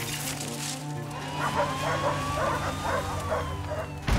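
A dog barking repeatedly, about two to three barks a second, over a low sustained drone of film-score music, with a thin high tone held above it.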